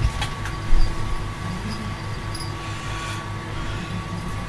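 Steady low mechanical hum in the room, with a few short knocks and rustles of a wig and costume being handled; the loudest knock comes just under a second in.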